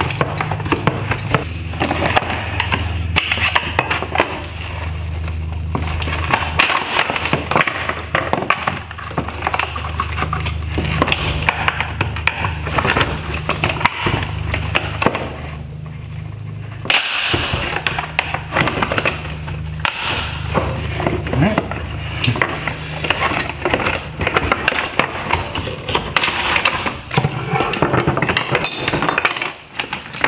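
A screwdriver prying and scraping at the black plastic clips pressed onto the metal mounts of a Tesla Model 3 headlight reflector, a dense run of clicks, scrapes and creaks of hard plastic, with a brief lull about halfway. The clips are one-way press fits that resist coming off.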